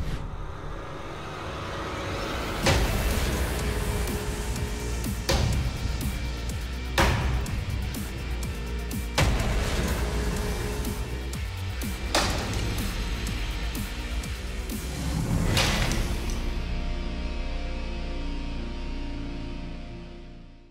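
Damascus broadsword blade chopping into a hanging wooden log in a strength test: six heavy thwacks a few seconds apart, over background music that fades out near the end.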